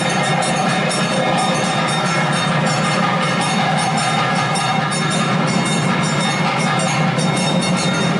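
Temple arati music: a dense, continuous clatter of bells and percussion with a steady held tone underneath, played while the lamp is waved before the deity.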